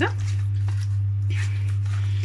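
Hands rubbing and squeezing seasoned raw chicken pieces in a stainless-steel tray, giving short soft wet rubbing sounds, over a steady low hum.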